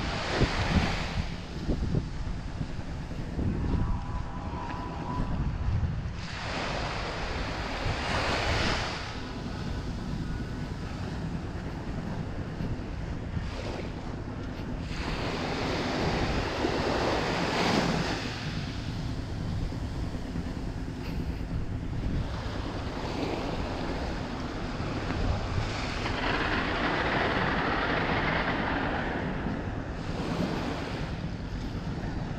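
Small waves washing up on a sandy shore, swelling and fading several times, with wind rumbling on the microphone.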